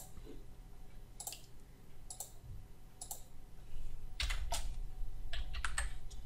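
Scattered clicks and key taps from a computer keyboard and mouse, about nine in all, coming closer together in the last two seconds.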